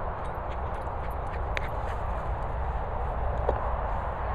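Wind buffeting the microphone in an open field: a steady low rumbling noise, with a few faint clicks.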